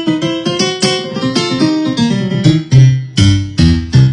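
Korg microStation digital keyboard with a piano sound, played with one hand: a quick run of notes stepping downward, then a few loud low notes in the last second and a half.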